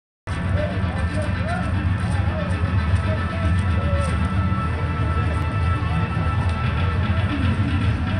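Music with a singing voice over a heavy bass, steady in level throughout.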